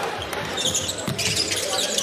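Basketball game sound on a hardwood court: a ball being dribbled under crowd murmur, with short high sneaker squeaks.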